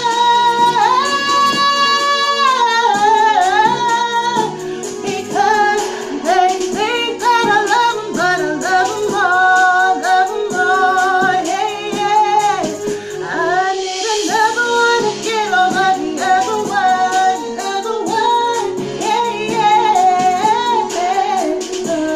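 A woman sings an R&B song over a backing track with a steady beat. Her voice moves through runs and wavering held notes, with one long held note about a second in.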